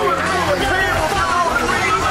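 Intro music with a steady bass bed under a dense babble of overlapping voices, none of them clear as words.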